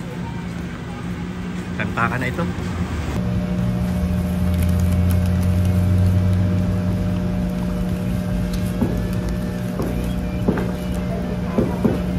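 A motor vehicle passing, a low rumble that swells and fades over a few seconds, over a steady low hum, with a few short clicks near the end.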